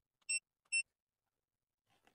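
Two short high beeps, about half a second apart, from the AutoLink AL329 OBD2 scan tool's keypad as its buttons are pressed.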